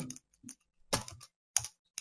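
A few separate computer keyboard keystrokes, spaced out while a line of code is being typed.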